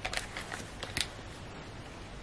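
A few light clicks and knocks from over-ear headphones being handled and fitted onto the head, within the first second.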